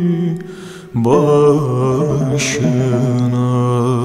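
Turkish folk song: a male voice breaks off briefly, then holds one long, steady note from about a second in.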